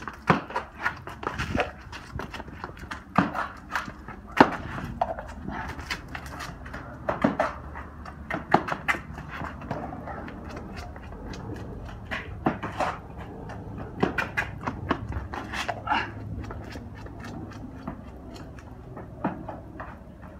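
A man's running footsteps on concrete, irregular sharp steps, scuffs and quick stops, with hard panting breaths from the sprint.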